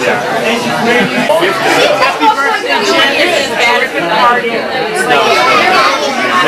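Many people talking at once: loud, overlapping chatter of voices in a crowded room.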